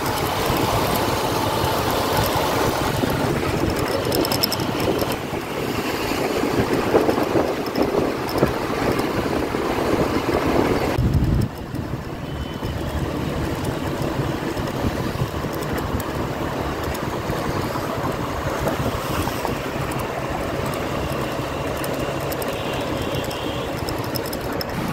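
Road traffic noise heard while riding along a busy road: vehicle engines running and tyre noise, steady and fairly loud, turning more muffled about halfway through.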